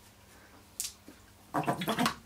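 Acrylic paintbrush being washed in a water-filled brush wash box with rivets in its bottom, which pull the paint off the bristles. There is a brief splash a little under a second in, then a louder spell of swishing and scrubbing near the end.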